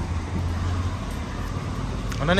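A car engine idling: a steady low hum with street noise over it.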